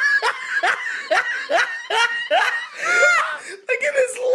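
A young woman laughing: a run of short ha-ha pulses, about two a second, then one longer, higher-pitched laugh about three seconds in.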